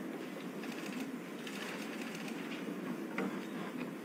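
Steady low room hum with a few faint, short clicks.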